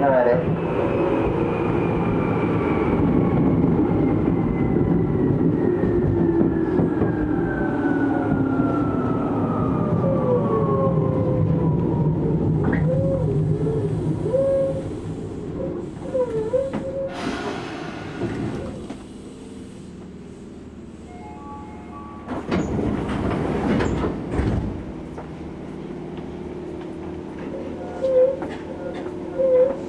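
Tokyu 8500 series commuter train slowing down, heard from inside the car: the traction motors whine steadily downward in pitch under braking while the running noise fades as the train comes to a stop. Near the end come a few short bursts of hiss.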